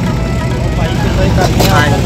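Steady low rumble of passing road traffic, with voices of people talking nearby.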